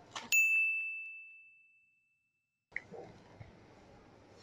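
A single bright ding: one clear chime tone that strikes sharply and rings out, fading over about a second and a half.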